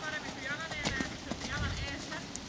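Hoofbeats of a ridden horse cantering on sand arena footing, a few dull strikes, with a person's voice talking over them.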